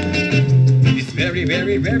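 Jamaican vocal record playing on a turntable: bass line and guitar, with a man's singing voice coming in about a second in.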